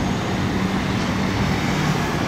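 Steady city road traffic heard from above, engines and tyres blended into one continuous noise, with a low engine drone holding through most of it.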